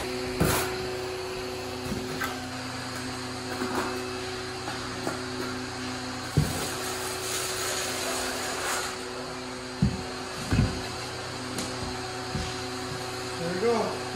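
A steel trowel scrapes as it spreads thin-set mortar over a floor-heating membrane, with a few sharp knocks, over a steady hum.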